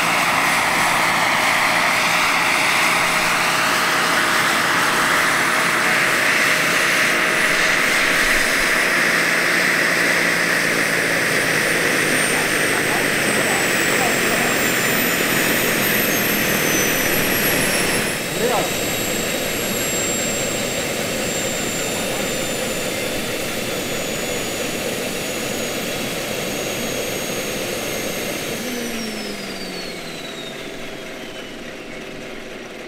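Jakadofsky Pro 5000 turbine and rotors of a 2.5 m scale model Bell 412 helicopter running as it hovers and settles onto its skids. The turbine's high whine sinks slowly as power comes back, then drops away steeply near the end as the turbine spools down. There is one short knock partway through.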